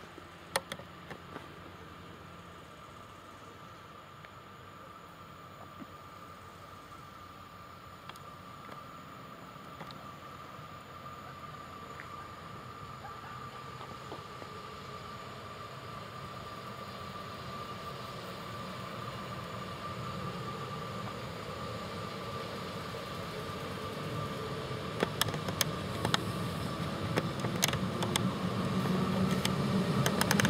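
Class 182 electric locomotive (Škoda-built, ex-ČSD) running light and approaching, growing steadily louder, with a steady high whine throughout. Near the end a few sharp clicks come from the wheels as it draws close.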